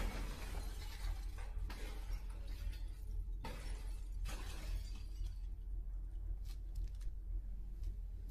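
Glass shattering with a sudden crash, followed by several more crashes of breaking glass over the next few seconds, then scattered small clinks. A steady low rumble runs underneath.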